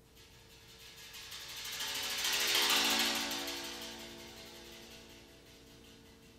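Double second steel pan played as a rapid mallet roll on several notes at once, swelling to a peak about halfway through and then fading away.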